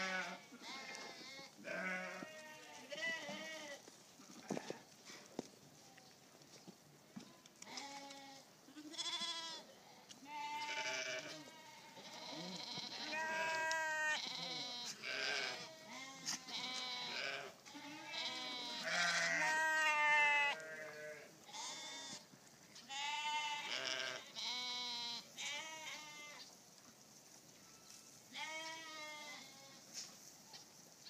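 Jacob sheep bleating over and over, one wavering call after another at several different pitches, with a few quieter gaps between runs of calls.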